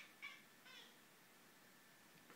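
A cat gives two short, faint chirps in the first second, the sound cats make while watching prey; otherwise near silence.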